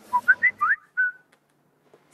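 Mobile phone message alert: a quick run of four or five short, whistle-like chirping notes, some rising, ending on one brief held note just over a second in.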